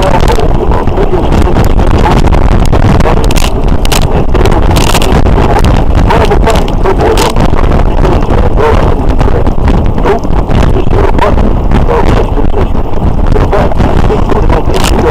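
Wind buffeting the microphone of a camera mounted on a moving motorcycle, a loud steady rush of air, with the motorcycle's running and road noise mixed in.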